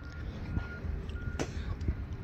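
Electronic beeper sounding a short steady high tone over and over, about every two-thirds of a second, over a low rumble of wind and handling noise, with a sharp click about one and a half seconds in.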